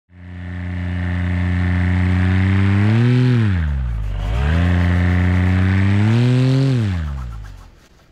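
An engine running, revved up twice: each time its pitch climbs, holds briefly and drops back. It fades in at the start and fades out near the end.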